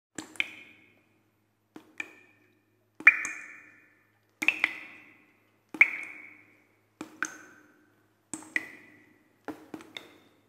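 Struck percussion intro: eight sharp strikes, mostly in pairs of knocks, come about every second and a quarter. Each rings briefly at a pitch that changes from strike to strike.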